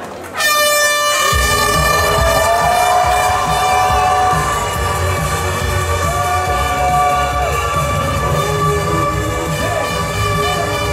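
Air horn sounding a start signal: one long, steady tone that begins suddenly about half a second in and holds without a break.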